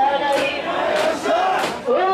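Mikoshi carriers chanting together in a loud, pitched call-and-answer as they shoulder the portable shrine, with a crowd around them and sharp short sounds about every half second.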